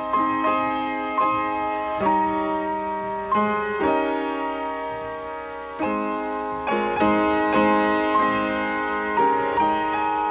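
Solo piano playing a slow hymn, chords struck about once a second and left to ring.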